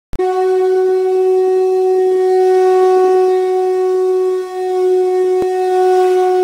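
A wind instrument blowing one long, steady note at a single pitch, dipping briefly in level about four and a half seconds in before carrying on.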